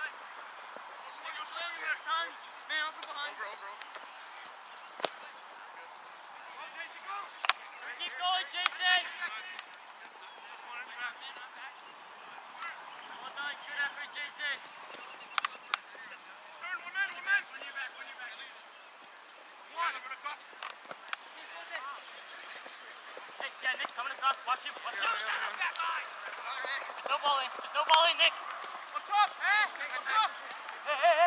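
Soccer game on a grass field: clusters of short repeated calls throughout, busier and louder near the end, with a few sharp kicks of the ball.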